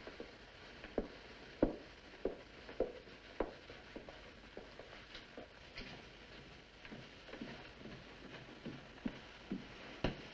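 Footsteps walking indoors, a steady pace of under two steps a second, louder over the first few seconds and fainter after. A steady hiss from the old film soundtrack lies underneath.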